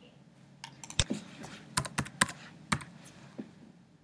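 Typing on a computer keyboard: a quick run of about a dozen keystrokes, starting about half a second in and stopping a little after three seconds, a few struck noticeably harder than the rest.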